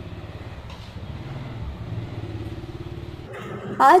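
A motor vehicle engine rumbling with a low, even pulse, growing louder over the first couple of seconds and falling away shortly before a woman starts speaking.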